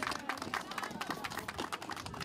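Crowd applauding: many hand claps running together, fairly faint.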